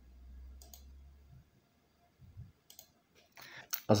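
Two faint computer mouse clicks about two seconds apart, over a low rumble in the first second and a half.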